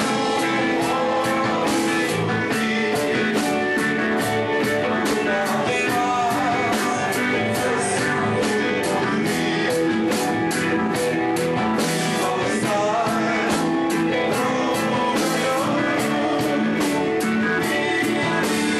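Live rock band playing a song, with guitar and a steady drum beat.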